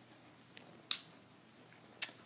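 Dimmer switch being turned on: a faint tick, then one short, sharp click about a second in, over quiet room tone.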